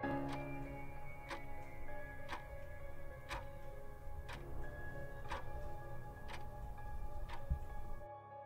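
Clock ticking steadily about once a second over a sustained ambient music drone.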